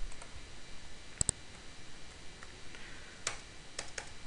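A few computer keyboard keystrokes, heard as separate sharp clicks, with a quick pair a little over a second in and two more near the end.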